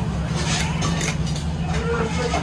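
A steady low mechanical hum, like an engine or machinery running, with faint voices near the end.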